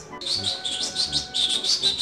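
A quick series of high, bird-like chirps, about eight short calls in under two seconds.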